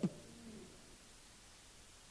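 A pause in a man's speech: his last word dies away, a faint short low hum follows about half a second in, then near silence with only room tone.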